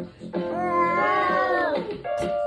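Music playing with a high voice holding one long note for over a second, bending down in pitch as it ends.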